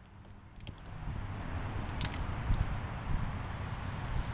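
Outdoor wind noise, a steady rushing that builds after the first second, with a sharp click about two seconds in.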